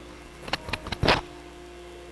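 A hand scratching and rubbing at a hoodie collar right by a clip-on microphone: a few short scrapes and rustles from about half a second in, the loudest about a second in. Under it runs the steady hum of a 3D printer that is printing.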